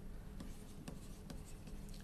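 Stylus writing on a tablet: faint light taps and scratches as a few handwritten words are written.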